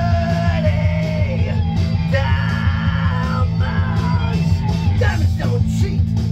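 Rock music: an electric guitar lead line with sliding, bending notes over a steady low bass and a drum beat.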